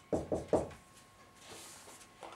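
Dry-erase marker tapping against a whiteboard three times in quick succession as letters are written, followed by a faint brushing sound near the end.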